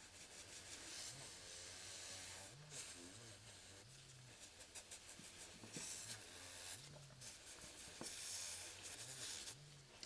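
Faint whir of an electric nail file spinning a soft brush bit, brushing filing dust off freshly filed acrylic nails, with a low hum that steps up and down and light brushing against the nail.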